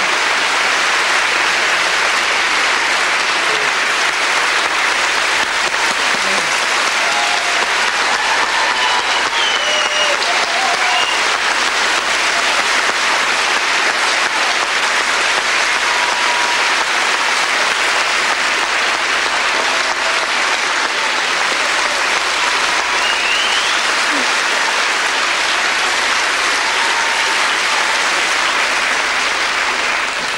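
A large audience applauding steadily and loudly in a long standing ovation.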